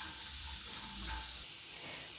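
Peanuts, onion and green chillies frying in oil in a stainless steel pan: a steady sizzling hiss that eases off a little about one and a half seconds in.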